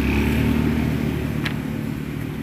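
A steady motor hum runs throughout, with one short click about one and a half seconds in.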